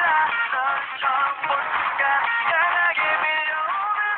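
Pop song playing back, a sung melody with an auto-tuned, synthetic-sounding voice, dull and thin with no high end.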